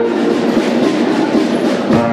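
School concert band's percussion in a rapid drum roll, a dense rattling texture with little held pitch between the band's sustained brass and woodwind chords.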